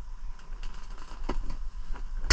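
Faint clicks and rustles of hands handling a fishing lure and line, over a low steady rumble.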